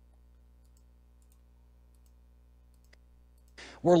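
Near silence with a faint steady hum and a single faint click about three seconds in; a man's voice starts just before the end.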